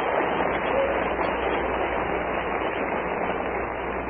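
Steady hiss with a low hum from a muffled, narrow-band recording, with faint indistinct voices in the background.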